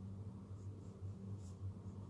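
Pen writing on paper: a few faint, short scratching strokes over a steady low hum.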